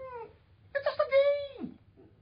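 A man's voice giving a drawn-out wordless moan, held on one pitch and then dropping away at the end, acting out dismay at his football team losing. A shorter voiced sound trails off right at the start.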